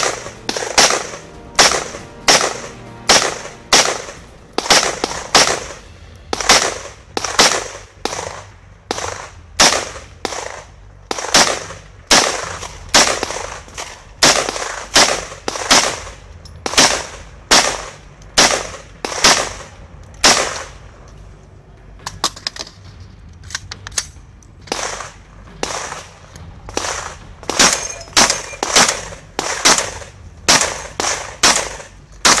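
A long string of gunshots, about one to two a second, from a shooter firing an AR-15-style semi-automatic rifle and then a shotgun at a 3-gun stage. Each shot has a short echoing tail. About two-thirds of the way through the shots stop for a few seconds while he changes guns, then the shotgun shots follow.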